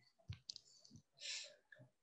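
Near silence, with a few faint clicks in the first half and a short breath-like hiss about halfway through.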